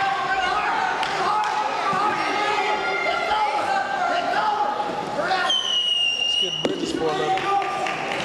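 Spectators and coaches shouting over a high school wrestling bout. About five and a half seconds in, a referee's whistle blows one steady blast of about a second, followed by a single thud.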